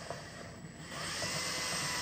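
Cordless drill spinning a hand-mixer beater through the plastic lid of a jar, stirring thick peanut butter. The motor's whine dips briefly about a third of the way in, then picks up again with a rising pitch.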